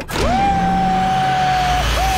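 Sci-fi film soundtrack: a long high tone that glides up, holds steady for over a second and breaks off, then comes in again and starts to fall away, over a low steady drone.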